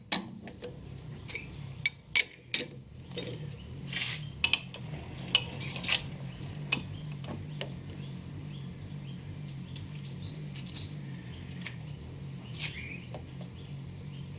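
Steel tooling clinking and clicking against a lathe's quick-change toolpost as a threading tool is handled and fitted, with a few sharp knocks in the first several seconds. A steady low machine hum runs underneath.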